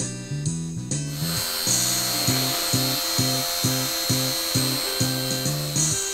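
Guitar background music with a steady beat. From about a second in, the steady high whine of the Horizon Night Vapor micro plane's small electric motor runs over the music, then stops abruptly near the end.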